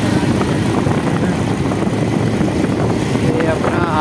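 Bajaj Pulsar 220's single-cylinder engine running steadily while the motorcycle cruises at about 50 km/h, mixed with steady wind rush on the phone microphone.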